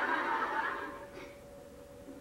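A soft, breathy chuckle that fades out about a second in.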